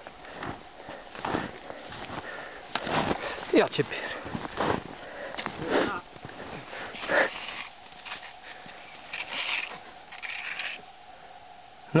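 Irregular swishing and crunching of cross-country skis and boots pushing through deep powder snow on a steep descent, one short scrape every second or so, with a brief spoken word.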